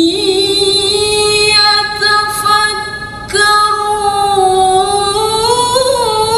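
A woman's voice in melodic Quranic recitation (tilawah), drawing a syllable out into a long ornamented held note. There is a brief break a little past halfway, and the pitch climbs slowly near the end.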